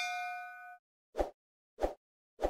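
Notification-bell 'ding' sound effect ringing out with a few clear tones and fading away. It is followed by two short pops, about a second apart, in the second half.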